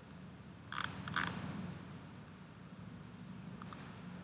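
A few short, quiet clicks from someone working a computer: two close pairs about a second in and a fainter couple near the end, over a faint low hum.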